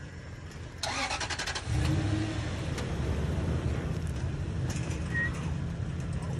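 Car engine starting about a second in, then idling steadily.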